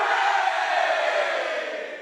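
A sustained choir-like vocal chord that slides slowly down in pitch, starting abruptly with the cut to an animated title card: a title sound effect.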